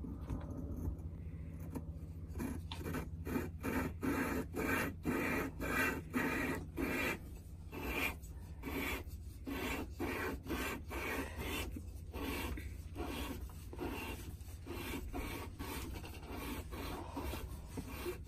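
A Yanmar SD50 sail drive's clutch cone being hand-lapped against its cup with a thin film of lapping compound, giving a gritty metal-on-metal rasping. The back-and-forth strokes run at about two to three a second, starting about two seconds in. The lapping re-beds the polished cone surfaces so the cone clutch grips again.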